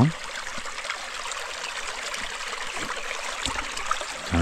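Shallow rocky creek trickling steadily, an even watery hiss, with one faint click about three and a half seconds in.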